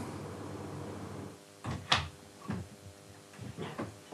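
A wooden door being handled: a few short clunks and knocks from about halfway in, over a faint steady hum.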